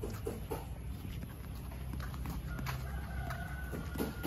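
Chickens, with a rooster crowing faintly in the second half, one long held call, and a few short clucks early on.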